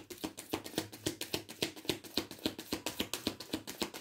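Tarot deck being shuffled by hand: a rapid, even run of card clicks, about eight a second.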